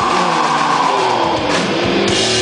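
Live punk band at full volume: the drums and low end drop out while one long high note slides slowly downward, and the full band crashes back in near the end.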